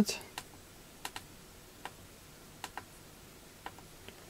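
Menu buttons on the exposed Zoom R16 circuit board being pressed: a series of short, sharp clicks, some in quick pairs, about one every second, as the menu is stepped through to the SD card format prompt.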